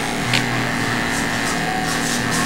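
Electric grooming clippers running with a steady whining hum as they trim fur on a small dog's front leg, with one short tick about a third of a second in.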